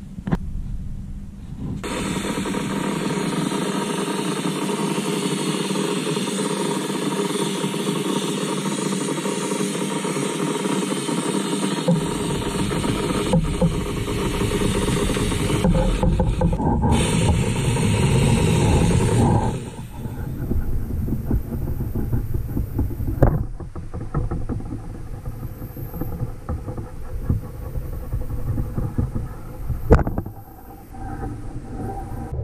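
Paint spray gun spraying red enamel, a loud steady hiss of air that cuts off about two-thirds of the way through; after it come quieter scattered knocks.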